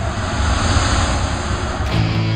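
Steady rushing noise with a thin, high, steady whine above it, which cuts off suddenly near the end.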